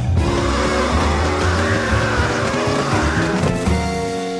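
Cartoon background music of short stepped notes, with a noisy whooshing effect that rises and then falls through the middle.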